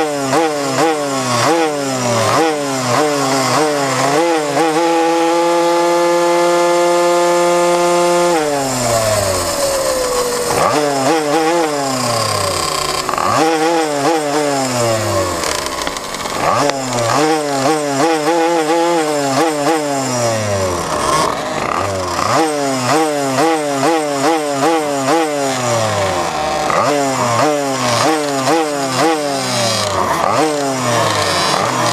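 Small racing minibike engine blipped in quick revs on the grid, then held at steady high revs for about four seconds. About eight seconds in the revs drop as the bike launches, then climb again and again as it accelerates through the gears.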